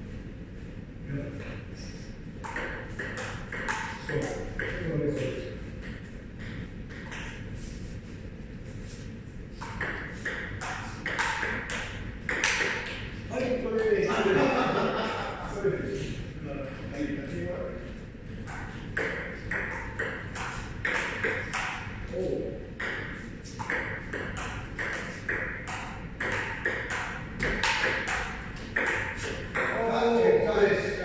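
Table tennis rally: the ball clicks in quick succession off the paddles and the table top, a few hits a second, with brief pauses between points.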